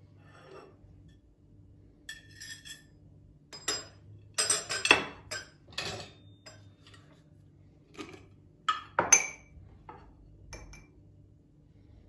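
Clinks and clatters of metal kitchenware on a ceramic plate and a glass jar: a metal cake server scraping and knocking on the plate as a slice of cookie is served, then a spoon and jar being handled. The loudest clatter comes around the middle, with another sharp clink about nine seconds in.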